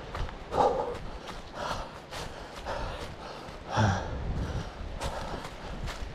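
A runner's footsteps on a dirt and leaf-litter forest trail, quick and regular, with heavy breathing about once a second.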